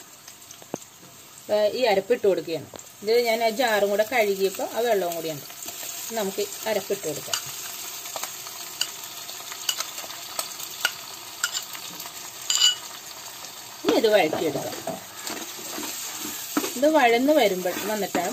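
Sliced shallots and green chillies sizzling in coconut oil in a clay pot, with a steel spoon stirring and clicking against the pot now and then as ground spice powder is stirred in.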